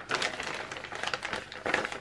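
A thin plastic carrier bag rustling and crinkling as a hand rummages inside it, in an uneven run of soft crackles.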